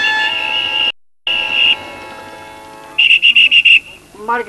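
A police whistle blown by the actor playing an officer: one long shrill blast, broken by a brief gap of silence, over the fading last notes of the music. Near the end comes a quick run of about six short blasts.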